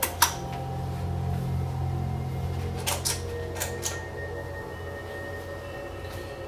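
Low steady drone with a few sharp clicks and knocks of small objects being handled on a desk, the loudest about a quarter second in and a cluster of lighter ones around the middle.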